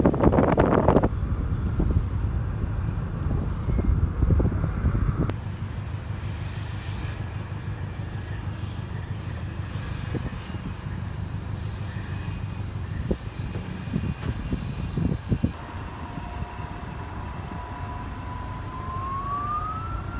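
Distant jet aircraft engines: a steady low rumble, loudest in the first second or so, with a thin engine whine joining near the end and climbing in pitch.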